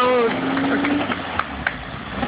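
Jensen-Healey's engine running as the car pulls away, a steady low note that fades about a second in and leaves a quieter low hum, with two sharp clicks in the second half. A brief voice is heard at the very start.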